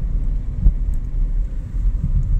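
Steady low rumble of a car in motion, heard from inside the cabin, with a faint tap about two-thirds of a second in.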